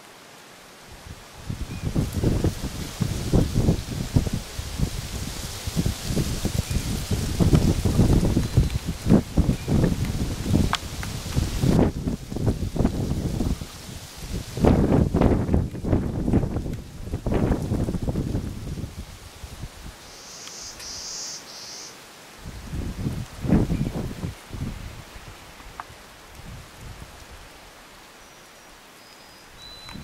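Loud, irregular rustling and rumbling noise that comes in surges, with quieter stretches in between.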